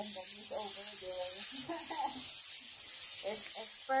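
A woman's voice speaking a few unclear words over a steady high hiss.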